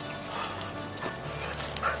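A black Labrador barking and yipping in the second half, over steady background music.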